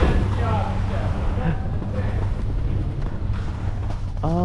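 Steady low hum of a detachable chairlift's terminal drive machinery, with a haze of skis and wind noise over it.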